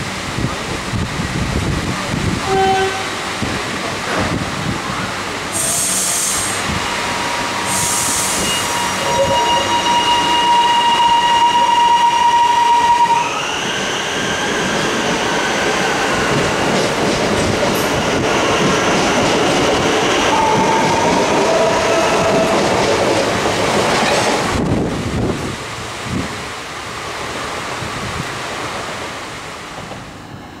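High Capacity Metro Train (electric multiple unit) pulling out of a station: two short hisses of air, then the whine of its traction motors, the tones shifting in pitch as it gathers speed, over the rumble of wheels on rails. The sound drops away sharply near the end.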